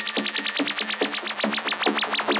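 Electronic dance track in a build-up with the bass and kick dropped out. A fast, even ticking pattern plays over short synth swoops that repeat quicker and quicker.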